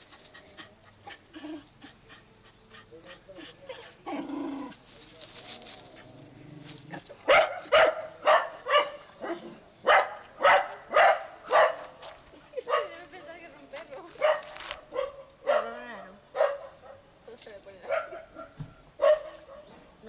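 Small long-haired terrier-type dog barking at cats: a run of sharp barks starting about a third of the way in, roughly two a second with short pauses.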